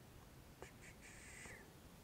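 Near silence with faint sounds: a click a little over half a second in, two very short high blips, then a brief high-pitched sound that ends in a falling sweep about one and a half seconds in.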